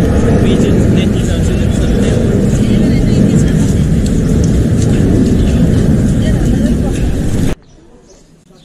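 Loud, steady rumbling noise with most of its weight low down. It cuts off abruptly near the end.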